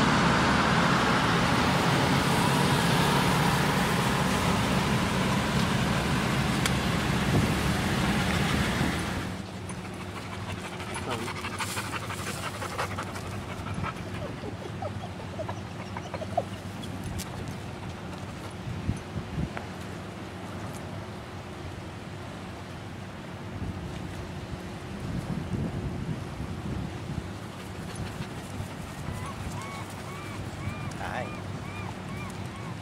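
Steady road traffic noise from a congested street for about nine seconds, then a sudden cut to a much quieter outdoor bed. Over it come scattered light clicks and clanks of a small metal hibachi grill being handled.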